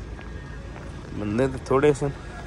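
Steady outdoor street noise, then a man's voice for about the last second, with a pitch that rises and falls.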